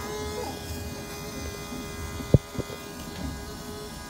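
Diesel truck's electric fuel pump running with the engine off, a steady buzz. It is priming fuel through leaking injectors that are filling the crankcase. A sharp click a little after two seconds in, with a fainter one just after.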